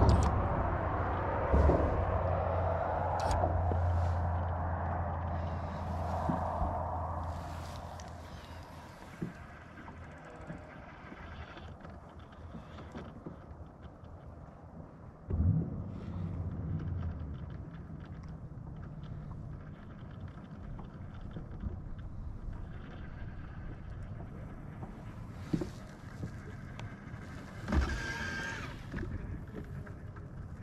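Low steady hum of a bass boat's electric trolling motor, running for the first several seconds and again briefly about halfway through, with a few light clicks and knocks in between.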